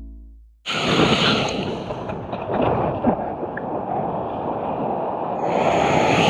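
Music fades out in the first half second, then after a sudden cut comes rushing whitewater and surf from a camera riding on a board in the wave, with wind on the microphone.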